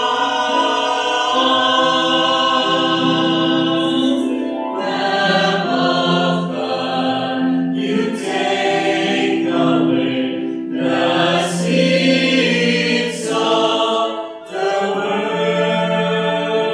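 Choir singing a slow liturgical chant in several-part harmony, with long held notes.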